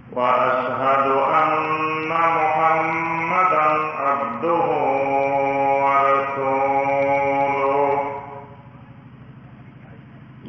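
A man's voice chanting unaccompanied in long, held, melodic phrases in the manner of Islamic recitation; the phrase breaks off about eight seconds in.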